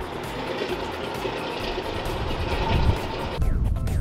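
Fishing boat engine running steadily, with background music underneath. A little before the end the sound changes abruptly to a louder, deeper rumble.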